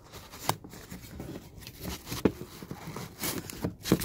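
A steel 1911 pistol magazine being worked into a nylon pocket magazine pouch: fabric rubbing and scraping, with a few sharp knocks from the magazine and pouch against a hard surface, the loudest near the end.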